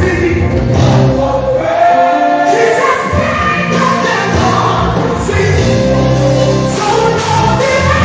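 Live gospel worship song: many voices singing together over steady instrumental backing, played loud through a PA.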